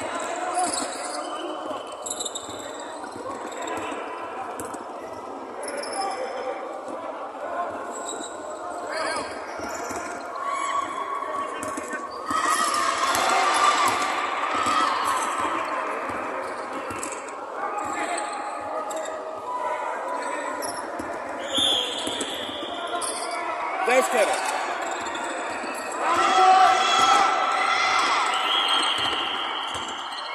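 Basketball game sounds in a large hall: a ball bouncing on the hardwood court with sharp knocks throughout, over players' voices calling out.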